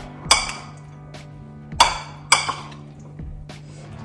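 A metal spoon stirring salad in a ceramic bowl, clinking against the bowl three times, each clink ringing briefly.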